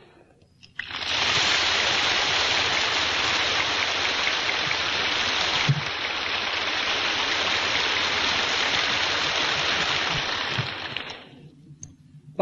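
Audience applauding: a steady clatter of many hands that starts abruptly about a second in, holds for around ten seconds and dies away near the end.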